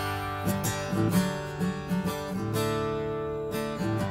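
Acoustic guitar strummed, the chords ringing on between the strokes.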